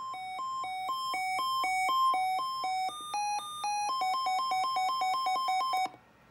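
Weather alert radio sounding its advisory-level siren test: an electronic two-tone alert alternating between a low and a high beep about twice a second and growing louder, stepping up in pitch for about a second around the middle, then alternating faster before cutting off suddenly just before the end.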